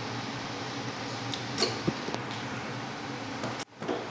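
Indoor room tone with a steady low hum and a few faint clicks and a small knock around the middle; the sound drops out for an instant near the end.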